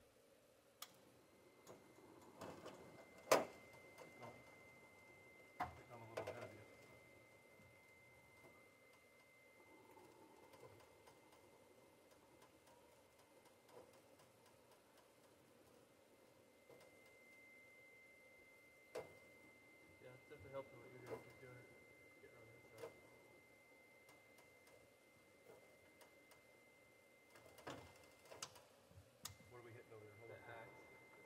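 Mostly quiet, with scattered metal clicks and knocks from hands working on a homemade bandsaw mill's saw head as its slipped-off blade is worked back on; the sharpest knock comes about three seconds in. A faint steady high whine comes and goes.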